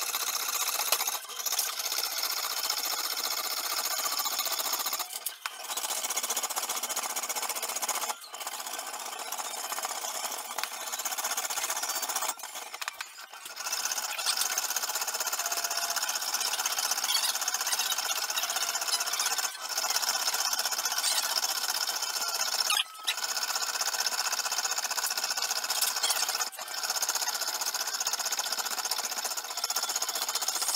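Hand piercing saw cutting brass, its fine blade rasping in fast, continuous strokes. The rasp is broken by several brief pauses.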